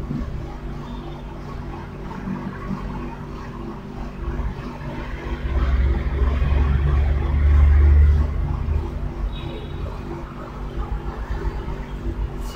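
Room noise with a steady low electrical hum; a deep rumble swells up about halfway through, holds for a few seconds and dies away.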